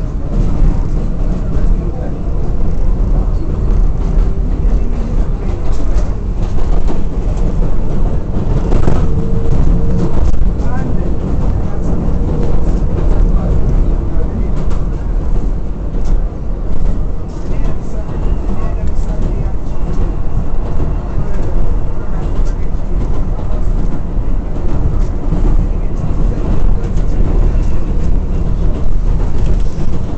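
R188 subway car of a 7 express train running along the track, heard from inside the car: a steady rumble of wheels and running gear, with irregular clicks and knocks from the wheels and a brief faint whine about nine seconds in.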